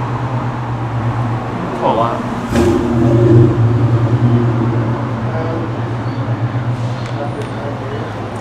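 A steady low engine-like hum that swells louder for a couple of seconds about two and a half seconds in.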